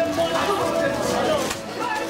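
Indistinct talking from several adults and children close by, no words clear.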